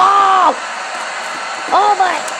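A high-pitched voice shouts "Bomb!", then a short "Oh" near the end, over a steady background noise.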